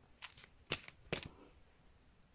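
Cards being handled on a table: a few short, soft flicks and rustles in the first second and a half, then quiet.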